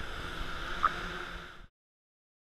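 Indoor pool water sloshing at the surface around the camera, with the hum of the hovering Naviator quadcopter drone's rotors further off and one short blip a little under a second in. The sound stops abruptly shortly before the end.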